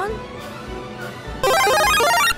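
Light background music, then about one and a half seconds in a loud, short video-game power-up jingle: a rapid run of electronic bleeping notes, lasting under a second.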